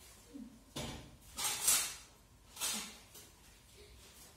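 Handling noises: three short rustling, scraping bursts, the loudest about a second and a half in.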